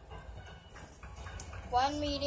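Quiet room with a faint low hum, then a child's voice starting near the end.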